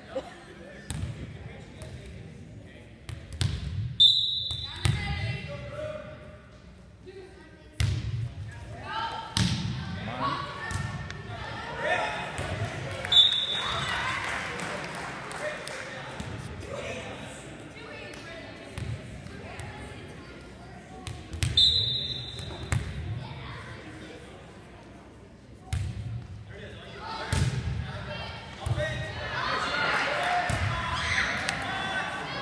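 Volleyball being served and hit, with sharp smacks and bounces echoing in a gym hall, and three short blasts of a referee's whistle about 4, 13 and 21 seconds in. Spectators' voices and cheering rise and fall between rallies.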